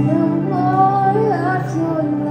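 A live worship band playing a song, with a woman singing a melody that bends in pitch over steady held chords.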